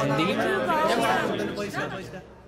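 Several people talking over one another at once, indistinct chatter in a large room.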